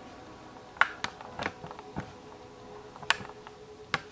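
Gravel pebbles clicking and knocking against each other as a young boa constrictor crawls over them: a handful of sharp, irregular clicks over a faint steady hum.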